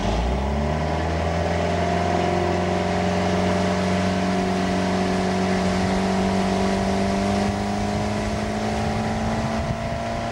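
Motorboat engine opening up to full throttle to pull a water-skier out of the water: its pitch climbs quickly in the first second, then holds steady at speed over rushing water and spray.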